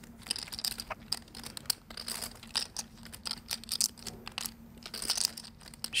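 Poker chips clicking irregularly as players handle them at the table, over a faint steady hum.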